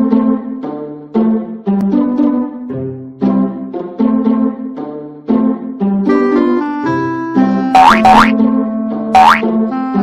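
Playful children's-style background music with bouncy, evenly paced keyboard notes. Near the end, three quick rising whistle-like sound effects cut in over it, two close together and a third about a second later.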